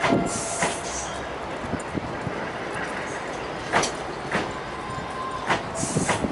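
Unpowered electric multiple unit cars rolling slowly past under tow, their wheels clacking over rail joints. The clacks come in pairs about half a second apart, one pair about four seconds in and another near the end, over a steady rolling rumble, with brief thin wheel squeals near the start and just before the end.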